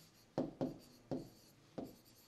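Pen writing on an interactive whiteboard screen: four short strokes, each starting sharply and fading quickly.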